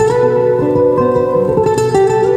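Steel-string acoustic guitar played solo: a line of quickly picked single notes ringing over a sustained lower note.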